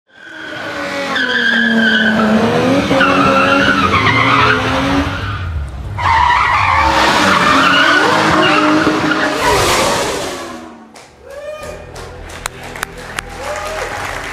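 Formula 1 car's tyres squealing and engine running during a smoky burnout, played over an auditorium's speakers in two long wavering stretches. It fades about eleven seconds in, leaving scattered claps.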